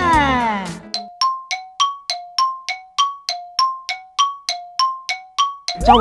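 A rapid run of bright bell-like dings, about three a second for nearly five seconds, alternating a lower and a higher note, with dead silence between the strikes: an edited-in comic chime sound effect. It follows a short falling glide in the first second.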